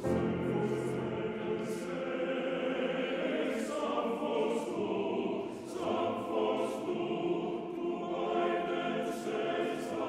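Men's choir singing a sustained part-song in harmony, with piano accompaniment.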